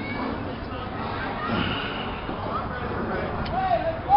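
Background voices and chatter of people in an outdoor park, with no clear close speech, over steady outdoor noise; one voice rises near the end.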